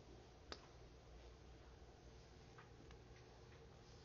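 Near silence: low room tone with one sharp click about half a second in and a few faint ticks later.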